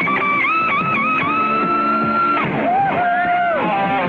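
Electric guitar solo in a live rock concert recording, over the band. A high sustained lead note dips quickly in pitch a few times about half a second in, is held, then drops to lower held notes a little past halfway.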